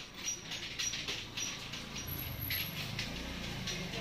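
A metal spoon scraping and knocking inside a clay pot as yogurt is scooped out: a run of short, irregular scratchy clicks.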